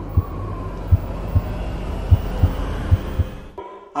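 Heartbeat sound effect: a series of soft low thuds over a steady low drone, which cuts off shortly before the end.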